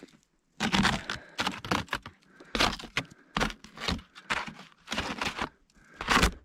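Handling noise close to the microphone: about a dozen short, irregular scrapes and crunches as the camera is fitted to a small GoPro mount on the snow-covered front of the truck.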